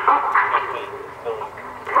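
A man's commentary voice over public-address horn loudspeakers, thin with little bass.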